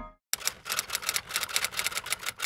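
Typewriter sound effect: a rapid, uneven run of key clicks, about nine a second, starting about a third of a second in as a title types out letter by letter.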